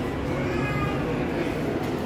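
Steady rumbling background noise with faint voices in the distance.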